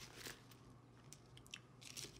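Faint, scattered crackles and crunches from an opened foil-and-plastic biscuit packet and the biscuits in it being handled, with a slightly louder crackle near the end.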